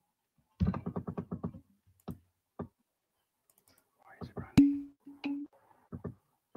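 Computer keyboard typing picked up by a computer microphone: a quick run of key clicks about a second in, then a few scattered clicks, and a sharper click with a short low hum near the end.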